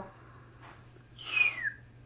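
A short whistle from a man's lips, sliding down in pitch over about half a second with a rush of breath, in the second half. A low steady hum runs underneath.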